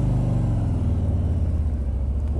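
Harley-Davidson Street Glide's Milwaukee-Eight 107 V-twin engine running at a steady low note as the bike pulls away.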